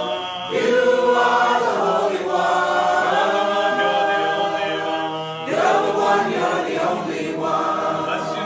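A small congregation sings an unaccompanied call-and-response worship song in unison, led by a man and a woman. New sung phrases start about half a second in and again just past the middle.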